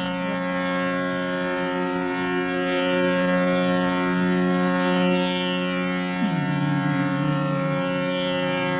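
Male Hindustani classical vocal in raga Malavati: one long note held steadily over a continuous drone, then gliding down to a lower note about six seconds in.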